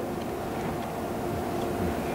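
Steady room noise: a low, even hum and hiss with no distinct events.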